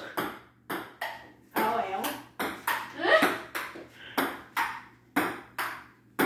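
Table tennis rally: a ping-pong ball clicking off paddles and the table in a steady back-and-forth, about two hits a second.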